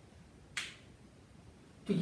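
A single short, sharp click about half a second in, over quiet room tone.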